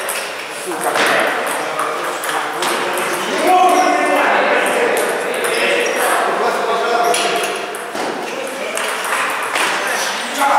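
Table tennis ball struck by rubber paddles and bouncing on the table in a rally, short sharp clicks echoing in a large bare hall, with voices talking in the background.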